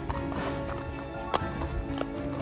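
A horse's hooves clopping as it is led at a walk, with a sharp knock about one and a half seconds in, under background music with sustained notes.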